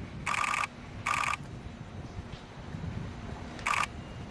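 Digital SLR camera shutters firing in rapid continuous bursts: three short bursts of clicks, near the start, about a second in and near the end, over a low steady background rumble.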